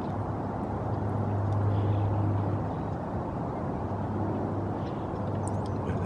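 Steady low rumble of distant vehicle traffic with a low hum, swelling slightly about two seconds in.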